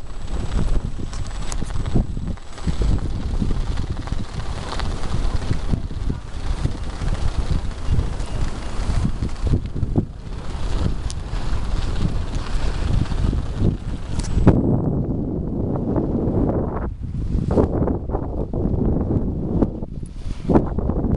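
Strong wind buffeting the microphone in gusts, a rough, uneven rumbling rush. About fourteen seconds in, the hiss above it drops away and a duller low rumble is left.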